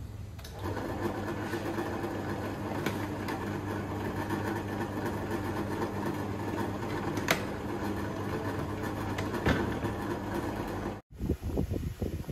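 Homemade 12 V-to-220 V inverter's transformer buzzing steadily under load, starting about half a second in as the battery lead is connected, with a few sharp clicks along the way. The buzz cuts off shortly before the end.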